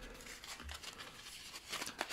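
Clear plastic wrapping around a bundle of Topps Big baseball card packs crinkling and tearing softly as it is pulled open.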